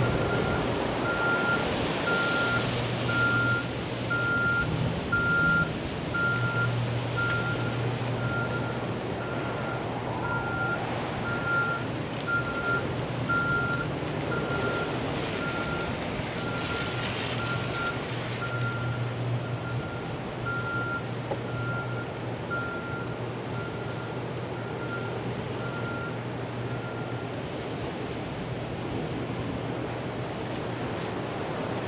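A vehicle's reversing alarm beeping at an even pace, about three beeps every two seconds, and stopping a few seconds before the end. Under it runs a steady rush of storm wind and rain with a low, steady hum.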